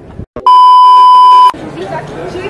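A loud, steady, pure beep tone lasting about a second, starting and stopping abruptly: a censor bleep dubbed in during editing. Voices and street chatter follow it.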